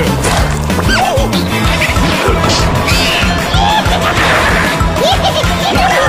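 Cartoon soundtrack: background music with a steady beat, overlaid with slapstick crash and whack effects and short squeaky cartoon cries that glide up and down in pitch.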